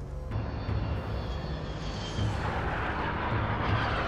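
Jet aircraft noise that starts suddenly and swells, getting louder about halfway through, over dramatic music with a low pulsing beat.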